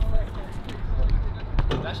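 Wind rumbling on the microphone under faint voices of people on the court, with a few light knocks near the end.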